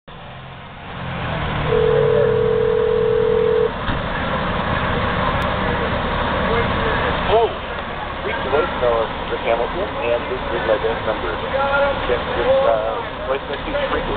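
A telephone ring tone heard through a phone: one steady tone lasting about two seconds, followed from about seven seconds in by a faint, muffled voice. Beneath it runs a steady low rumble from idling fire engines.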